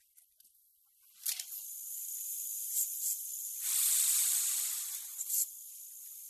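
Nitrous oxide (laughing gas) hissing as it flows into a dental gas mask. The hiss starts about a second in, swells louder and fuller for about a second and a half in the middle, and has a few short, sharper puffs.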